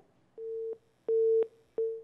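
Telephone busy tone on the call-in phone line: three short beeps at one steady pitch, each about a third of a second long. It is the sign that the caller's call has dropped.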